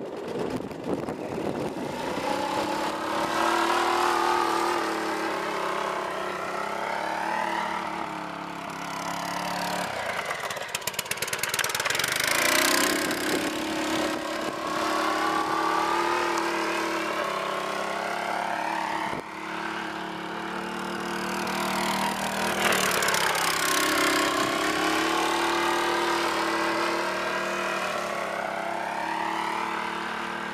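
A homemade go-kart's lawn mower engine running at speed as the kart drives back and forth. Its pitch swoops up and down as it passes, most clearly twice around the middle.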